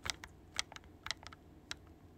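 Typing: a quick, irregular run of light clicks, about ten in two seconds, loudest at the start and about half a second in.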